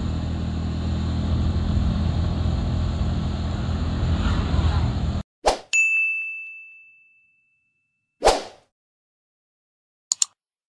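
Bajaj Pulsar P150 motorcycle's single-cylinder engine running steadily while riding along a road. The sound cuts off suddenly about five seconds in. A short whoosh and a bright ding follow, the ding ringing out for over a second, then another whoosh.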